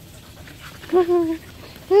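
Dog whining in greeting: a short pitched whine about a second in, falling slightly, then a second, louder one starting near the end.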